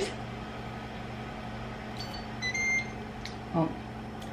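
A countertop air-fryer oven's timer beeping about two seconds in, a short beep and then a longer one, signalling that the cooking cycle has ended and the potatoes are done.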